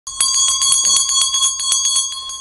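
Small brass hand bell shaken rapidly, its clapper striking about eight to ten times a second so the bell rings continuously; it starts about a fifth of a second in.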